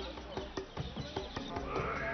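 Irregular light wooden clacks and knocks of full-length prostrations on wooden boards, over a murmur of voices in a crowd.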